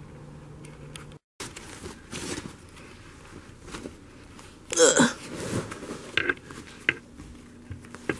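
A plastic shopping bag rustling as a hand sorts through the envelopes inside it, with scattered crinkles and knocks. About five seconds in, the loudest sound is a short vocal sound falling in pitch, like a hiccup or a grunt.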